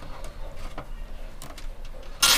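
Light handling noise and a few faint clicks as a bundle of PC power cables is gathered and a plastic cable tie is threaded around it inside a computer case.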